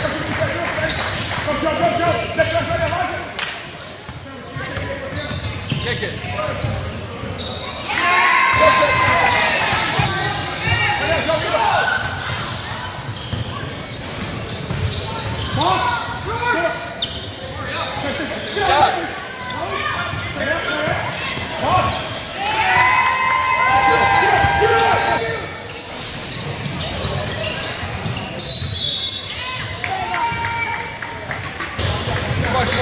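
A basketball bouncing on a hardwood gym floor during a youth game, with voices shouting from time to time in the large hall; the loudest calls come about a third of the way in and again a little past the middle.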